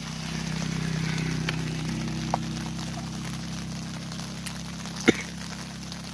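Steady rain hiss over a low, steady drone, with a few sharp clicks; the loudest click comes about five seconds in.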